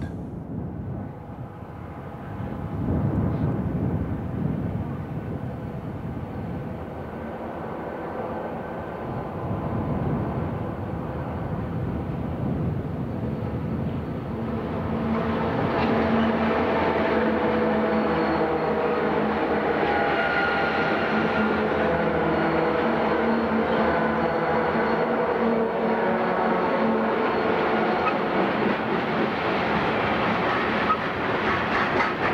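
A group of Santa Fe diesel locomotives drifting downgrade at the head of a freight train, approaching and then passing close. The engine sound grows louder about halfway through, where a steady whine of several pitches sets in over the rumble and runs on as the freight cars roll by.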